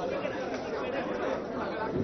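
A crowd of people talking over one another, many voices at once with no single speaker standing out.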